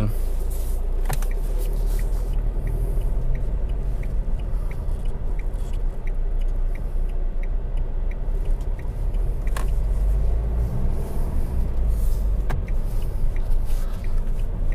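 A Fiat Egea's turn-signal indicator ticking softly and evenly at about two ticks a second, over the steady low drone of its 1.6 Multijet diesel and road noise heard inside the cabin. Two sharper clicks come later on.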